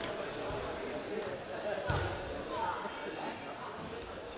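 Two dull low thuds from Greco-Roman wrestlers grappling on the mat, about half a second and two seconds in, with faint voices in a large hall.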